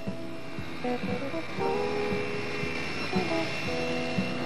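Background music: held notes over low plucked notes, in a slow even rhythm.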